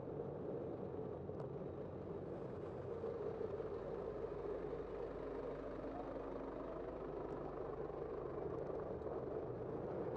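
Steady city traffic noise from cars and a truck just ahead in the lane, with a faint engine hum from about four to seven seconds in.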